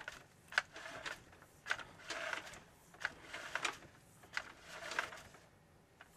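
Push cable of a sewer inspection camera being fed by hand into a drain line. It gives faint, irregular scrapes and rattles about once or twice a second.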